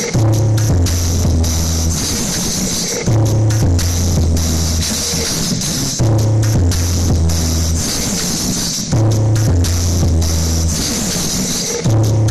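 Bass-heavy dance remix played loud through stacked mini sound-system speaker cabinets. A deep bass line repeats in phrases about every three seconds.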